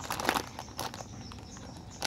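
Clear plastic packaging of a squishy toy crinkling as it is handled, in short, irregular crackles and clicks.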